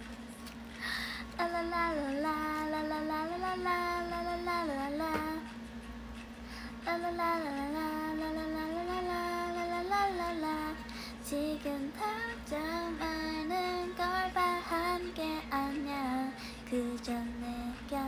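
A young woman singing a slow melody in long held notes, with short breaks about six and eleven seconds in.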